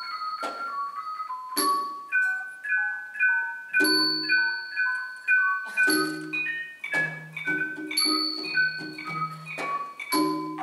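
Solo on a Thai large gong circle (khong wong yai): padded mallets strike the tuned bronze bossed gongs in a running melody of ringing notes, often two at a time. Small ching cymbals ring out about every two seconds to keep the beat, with low drum strokes under them.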